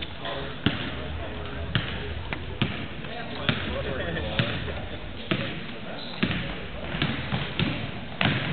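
A basketball being dribbled on a hardwood gym floor, one sharp bounce about every second, over the murmur of voices in the gym.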